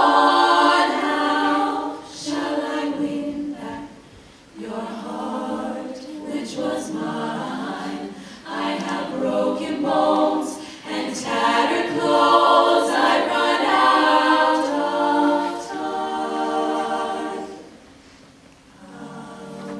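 All-female a cappella group singing in close harmony into microphones, in phrases that swell and fall back. The sound drops briefly about four seconds in and again near the end.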